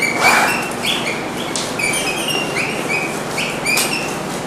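Dry-erase marker squeaking on a whiteboard during writing: a quick run of short, high squeaks that glide upward, mixed with a few brief scratchy strokes.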